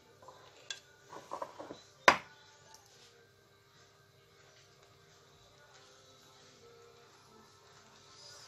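Glass bowls clinking as they are moved on a stone countertop, with a few light knocks and one sharp clink about two seconds in. After that only a faint steady hum remains.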